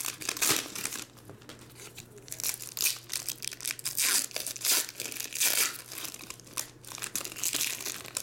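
Foil trading-card pack wrappers being torn open and crinkled by hand, in irregular bursts of crackling.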